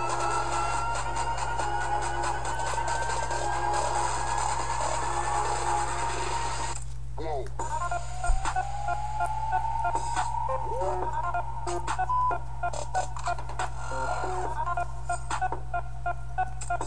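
Electronic trap-style music with a steady deep bass. A rising synth tone builds over the first six seconds, and the upper sounds drop out briefly about seven seconds in. Then a second rising sweep comes in, with sharp percussive hits.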